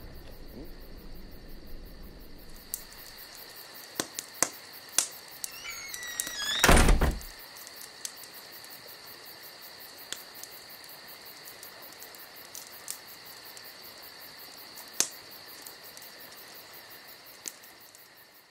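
Crickets chirping steadily, with a few sharp clicks and one heavy thump about seven seconds in.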